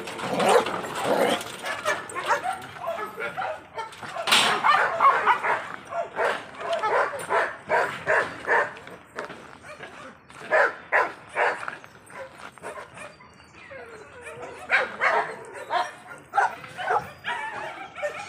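A dog barking and yipping in short, repeated calls, in several bouts with quieter gaps between them.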